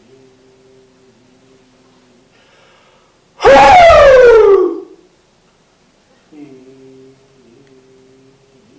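A man shouts the phowa syllable "HIK" once, loudly, about three and a half seconds in; the voice starts high and slides down in pitch over about a second. This is the phowa exclamation that sends consciousness up through the crown of the head. A faint steady hum sits under it before and after.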